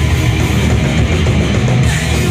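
Thrash metal band playing live and loud: distorted electric guitars over drums, heard from within the crowd.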